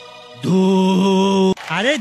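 A man's voice holding one long, steady hummed note, like a chanted 'om', for about a second, then breaking into swooping sounds whose pitch rises and falls again and again near the end.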